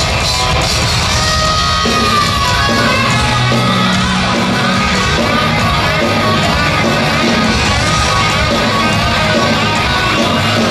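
Heavy metal band playing live at full volume: distorted electric guitars through Marshall stacks over drums and bass.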